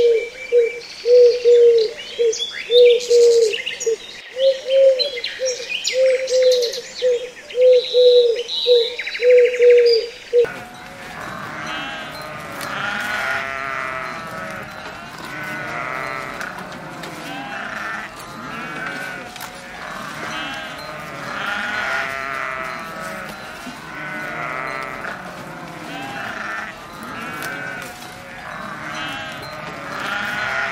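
Birds chirping over a low cooing call repeated about twice a second, which stops abruptly about ten seconds in. Then a herd of goats bleating, many overlapping calls.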